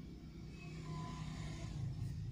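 A faint low rumble that grows louder about a second in, under the light scratch of a ballpoint pen writing on notebook paper.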